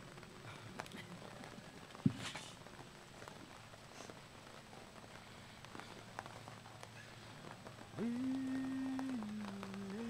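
Faint patter of light rain with scattered small clicks, and a single sharp knock about two seconds in. Near the end a singer's voice begins a long held note that steps down in pitch about a second later, the opening of a round dance song.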